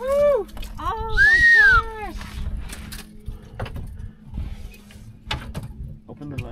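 Two drawn-out excited vocal exclamations, high and rising then falling in pitch, as a catfish is lifted aboard in a landing net, followed by scattered knocks and rattles of gear on the boat, over a faint steady low hum.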